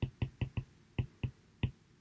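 About seven light, sharp clicks of a stylus tapping on a tablet screen during handwriting, spread over the first second and a half.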